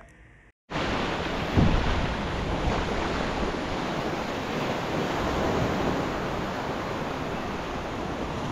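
Small surf breaking and washing up a sandy beach, with wind on the microphone. It is a steady rushing noise that cuts in abruptly under a second in, after a brief silence.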